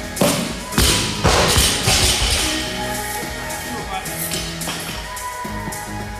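A loaded barbell with bumper plates dropped from overhead onto a rubber gym floor, hitting the floor and bouncing twice within the first second and a half, over steady background music.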